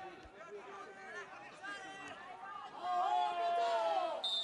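Voices calling out across an outdoor football pitch: scattered short shouts, then a longer held shout near the end.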